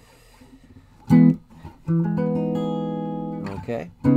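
Clean semi-hollow-body electric guitar playing chord voicings. There is a short strummed chord about a second in, then a chord that rings for about a second and a half, then a brief choppy strum near the end.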